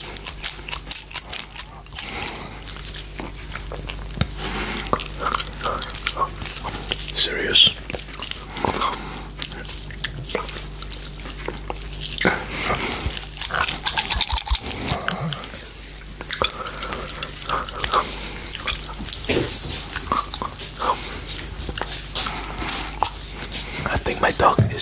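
Close-miked mouth sounds of biting, licking and chewing on a very hard giant gummy candy: irregular wet clicks and smacks, over a faint steady low hum.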